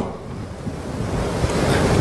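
A steady noisy hiss of background room noise with no voice in it, slowly growing louder.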